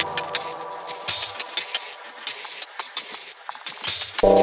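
Sparse breakdown of an electronic glitch-hop track with no bass or kick: irregular sharp, clattery clicks over a faint held synth tone.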